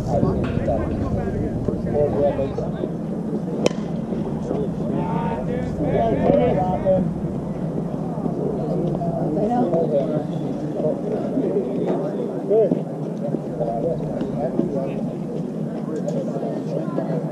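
Indistinct chatter of players and onlookers at a softball field, with a steady low hum underneath, and one sharp knock about four seconds in.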